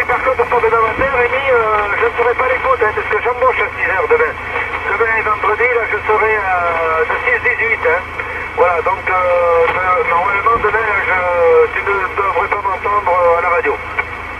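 A distant station's voice received over a President Lincoln II+ CB radio on lower sideband: continuous thin, band-limited radio speech over a steady low hum.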